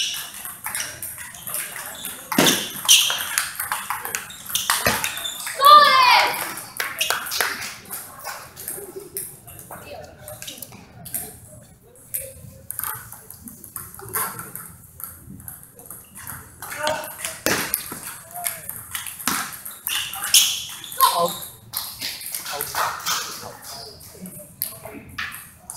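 Table tennis ball clicking sharply off the paddles and the table during rallies, in quick irregular runs of hits with pauses between points. About six seconds in, a brief wavering high-pitched squeal is the loudest sound.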